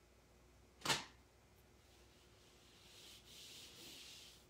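A single sharp knock about a second in, then a soft scraping rub near the end: a warm wooden blank being set against a wall and rubbed on it to draw heat out of the freshly pressed heat transfer vinyl.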